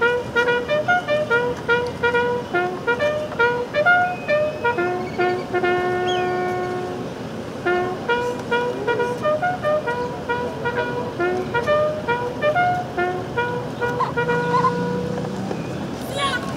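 A bugle sounds a call of single notes in quick rhythmic groups, with a few long held notes, as the salute to a guard of honour.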